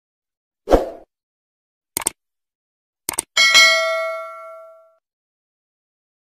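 Sound effects of an on-screen subscribe-button animation: a low thud, then two quick pairs of clicks, then a bell-like ding that rings several tones at once and fades away over about a second and a half.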